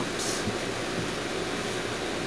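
Steady, even hiss from a running HHO electrolysis setup, its 17-plate cell gassing hard while drawing about six amps.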